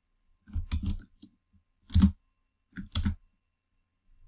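Typing on a computer keyboard: three short runs of key clicks with pauses between them.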